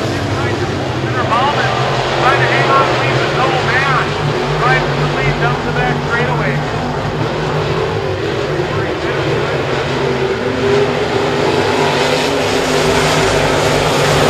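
A pack of IMCA Modified dirt-track race cars running at racing speed, their V8 engines droning together in a steady, loud wall of engine sound.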